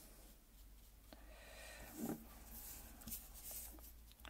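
Faint brushing of a small round paintbrush laying red watercolour paint onto watercolour paper, over a low steady room hum.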